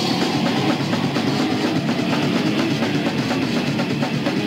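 Death metal band playing live: distorted guitar over fast, dense drumming, steady and loud with no break.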